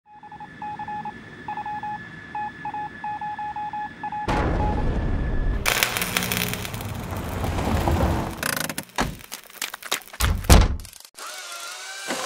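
Sound effects for an animation: an electronic beep pulsing irregularly at one pitch, then about four seconds in a loud rushing noise that runs on for several seconds, and a few heavy thuds near the end.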